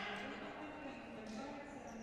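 Faint sports-hall ambience: a distant wavering voice echoing in the hall, with a couple of faint knocks, like a ball or feet on the wooden floor.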